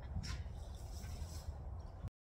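A hawk's wings flapping in one short whoosh about a quarter second in as it lands on the falconer's glove, over a steady low rumble of wind on the microphone.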